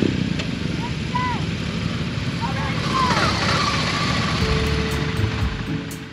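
Several motorcycles running at a dirt-arena start line, with voices in the background. About three seconds in the engine sound grows louder and brighter as a bike pulls away.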